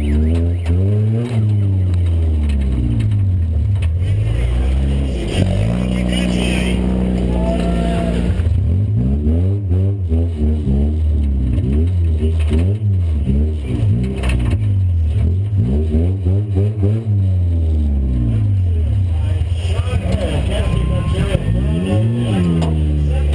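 Demolition-cross race car engine heard from inside the cabin, revving up and dropping back over and over as the driver works the throttle, holding steady revs for a couple of seconds partway through.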